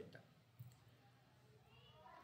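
Near silence: room tone, with one faint short click just over half a second in.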